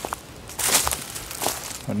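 Footsteps crunching through dry fallen leaves and twigs, one loud step about half a second in and a fainter one about a second later.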